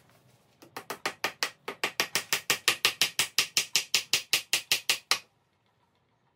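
Rapid, even light taps of a claw hammer, about seven a second, driving a small nail into the corner joint of a wooden window frame. The taps start soft, grow louder, and stop suddenly about a second before the end.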